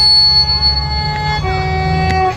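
Solo violin playing a slow melody: one long held note, then a step down to a lower held note about a second and a half in.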